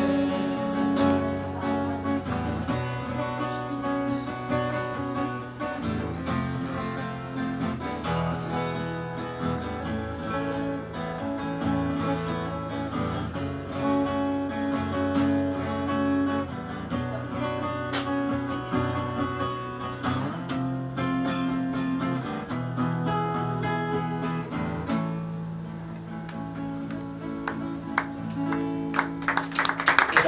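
Solo acoustic guitar strumming chords in the instrumental closing passage of a pop-rock song, growing quieter near the end.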